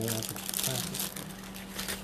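Jewelry packaging crinkling and rustling in the hands as it is opened, strongest at the start and again near the end.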